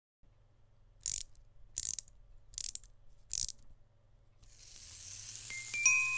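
Four short ratcheting clicks, evenly spaced about three-quarters of a second apart, as of a wind-up mechanism being turned. Then a hiss swells up and the first high, clear bell-like notes of the song's intro begin near the end.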